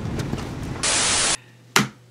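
Car cabin road rumble, then about a second in a half-second burst of static-like white noise, an editing transition effect, which cuts off suddenly to quiet room tone; a single short click follows near the end.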